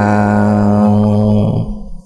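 A man's voice holding the long final note of a chanted Vietnamese poem recitation (ngâm thơ) on one steady low pitch, fading out about a second and a half in.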